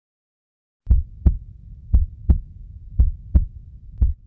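A heartbeat sound effect starting about a second in: three double thumps about a second apart over a low rumble, with a fourth beat beginning at the end.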